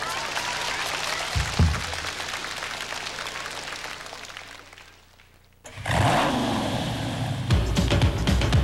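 Audience applause dying away, with a low thump about a second and a half in. After a short near-silent gap, electronic music cuts in with a sweeping sound, and a drum beat starts near the end.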